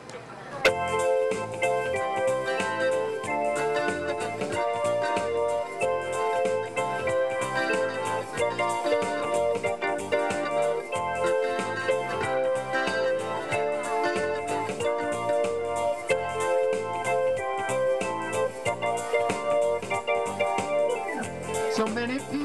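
Electronic keyboard with an electric-piano sound playing the instrumental introduction of a song in a steady rhythm, coming in sharply about a second in.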